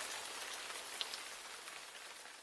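Shower water spraying: a steady hiss that grows slowly fainter toward the end.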